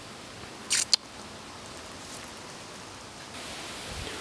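Two brief, sharp clicks close together a little under a second in, over a steady faint background hiss.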